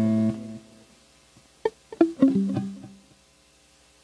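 Electric guitar played through an amplifier: a loud held low note cut off short at the start, then a few single plucked notes, each lower than the last, about two seconds in, ringing out by about three seconds.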